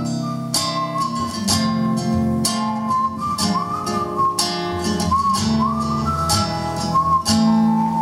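Two acoustic guitars, a nylon-string classical and a steel-string, playing an instrumental introduction: evenly strummed chords with a held melody line sliding between notes above them.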